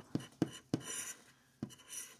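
A scratcher tool scraping the coating off a scratch-off lottery ticket in a series of short strokes, one of them longer near the middle.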